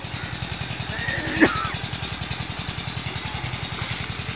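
A small engine running steadily with a low, even pulse. A short gliding call sounds once, about a second and a half in.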